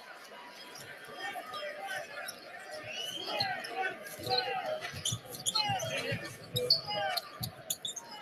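Basketball arena sound on a radio game broadcast with the commentators silent: crowd chatter and a basketball being dribbled on the court, with short high squeaks and sharp bounces, getting louder about a second in.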